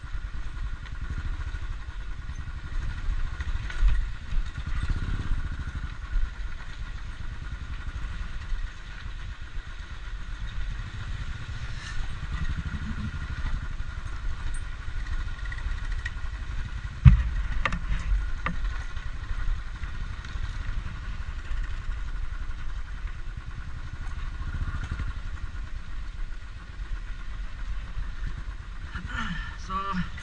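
Motorcycle engine running steadily at low speed on a rough dirt track, heard from the rider's seat. A single sharp thump about halfway through.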